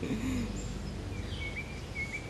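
Outdoor background noise with a few faint, short bird chirps in the second half.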